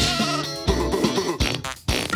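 Cartoon soundtrack: music with a wavering, bleating cartoon-sheep voice and a few sharp hit effects. The sound drops out briefly just before the end.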